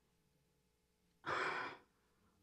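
A woman's audible breath, a short rush of air lasting about half a second, a little over a second in, after near silence.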